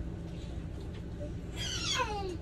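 A short, high-pitched vocal cry near the end that slides steeply down in pitch, over a steady low hum.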